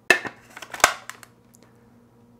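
Clear plastic lid of a Cuisinart mini food processor being set on its bowl and locked into place: a sharp knock at the start, a few small clicks, then a second loud click just under a second in.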